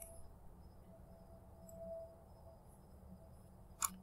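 Quiet room tone with a faint steady low hum and a faint thin tone for about a second in the middle; a short sharp sound near the end.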